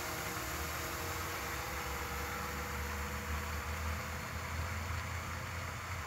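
DJI Mavic drone hovering some distance off, its propellers a faint steady hum of several tones over a steady hiss and low rumble.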